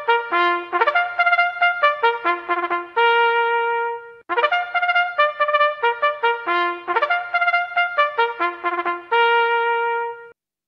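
Trumpet fanfare played as two phrases of quick notes, each phrase ending on a long held note.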